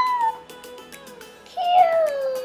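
A drawn-out vocal 'aww'-like sound that glides down in pitch and trails off within the first half second. About one and a half seconds in, a second long, wavering cooing sound starts and runs past the end. Both sit over quiet background music.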